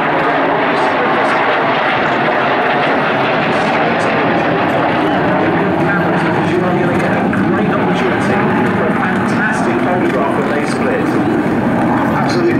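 Jet engines of a three-ship formation, a Saab 37 Viggen, a Saab 105 (SK 60) and a Hawker Hunter, passing in a flyby: a loud, steady rush of jet noise with no break.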